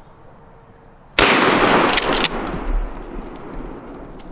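A single loud gunshot about a second in, its report echoing and dying away over the next second or two, followed by a few sharp crackles.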